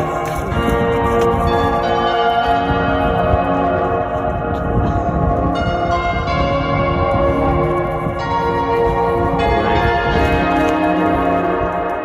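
Bells ringing: many overlapping struck tones at different pitches, with new strokes every second or two that hang and fade, over a low rumbling noise.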